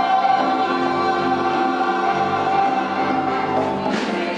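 A stage musical ensemble of singers holding one long sustained chord that breaks off near the end.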